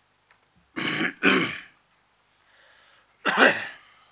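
A man clearing his throat close to a microphone: two harsh bursts in quick succession about a second in, then a third near the end.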